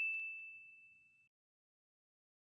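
Sound-effect bell chime from an animated subscribe button: one bright, high ding ringing out and fading away about a second in.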